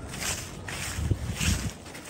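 Footsteps across grass and dry fallen leaves: a couple of soft thuds with light rustling.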